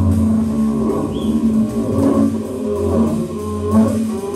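Live trio of electric guitar, bowed double bass and drum kit playing: a held low bowed note, broken now and then, under shifting guitar lines and light drums.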